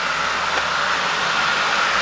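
Loud, steady mechanical rushing noise from outside that swells in over about half a second and holds level.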